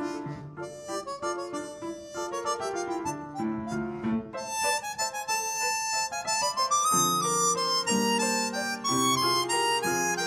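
A harmonica plays a quick melody in a run of short notes over an upright piano accompaniment. The piano's lower chords grow fuller about seven seconds in.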